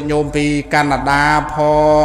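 A man's voice chanting in the Buddhist style: a quick run of syllables on one steady pitch, then longer held notes.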